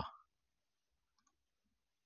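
Near silence with a few faint computer mouse clicks about a second in, after a man's word trails off at the start.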